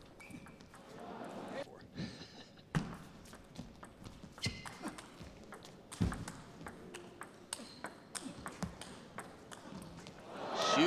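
Table tennis rallies: the plastic ball clicking sharply off the rackets and the table in quick exchanges of hits, with a few brief high squeaks from the players' shoes on the court floor.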